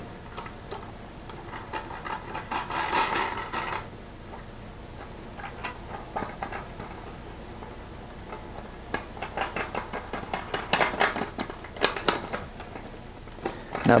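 Black plastic star knobs being spun down and tightened onto bolts of an aluminium motor-mount bracket: small rattling, scraping clicks of plastic on metal threads. There is a longer scraping stretch about two seconds in and a run of quick separate ticks near the end.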